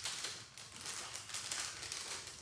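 Clear plastic packaging bag crinkling in the hands as it is handled and opened.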